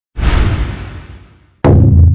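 Logo-intro sound effects: a whoosh that sweeps in and fades away, then a sudden impact about one and a half seconds in, ringing on as a low steady boom.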